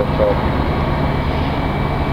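Steady low drone of a semi-truck's idling diesel engine, heard from inside the cab.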